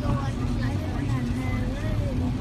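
Low, steady rumble of a car's engine and tyres on a wet road, heard from inside the cabin, with a radio voice faintly over it.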